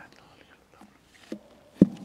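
A congregation murmuring its spoken response, faint and low, then two knocks near the end, the second a loud thump.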